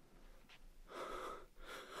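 Faint breathing from a man: a gasp-like breath about a second in, then a second breath just before he speaks.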